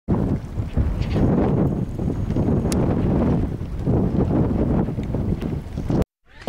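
Wind buffeting a microphone: a rough, low rumble that rises and falls in gusts, cutting off abruptly at the end.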